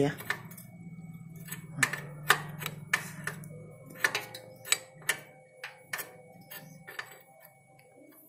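Open-end spanner working a motorcycle's rear chain adjuster bolt, turned and refitted in short strokes: irregular sharp metallic clicks, about one or two a second, over a low steady hum.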